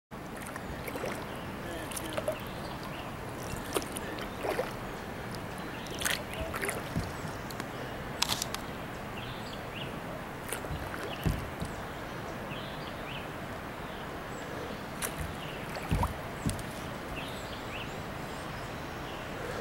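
Kayak paddle dipping and splashing in river water at irregular intervals, with small sloshes and knocks against a steady background hiss of moving water.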